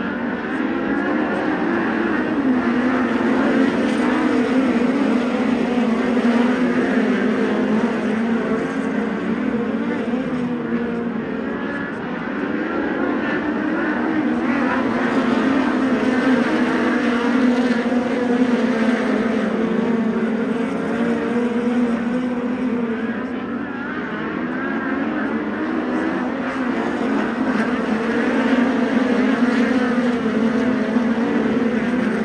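A field of USAC midget race cars running flat out around a dirt oval, their four-cylinder racing engines blending into one wavering engine note. The sound swells and fades about every twelve seconds as the pack circles the track.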